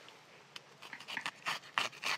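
Short, irregular rasping scrapes, several a second from about a second in, as a hand grips and pulls at the wall of a knit fabric tree container.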